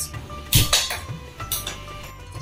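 A single clank of a metal cooking vessel about half a second in, with a lighter knock near the end, over quiet background music.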